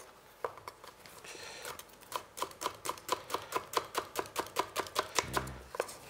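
Chef's knife chopping shallots on a wooden cutting board. The knife strikes are light at first, then from about two seconds in come fast and even, about five a second.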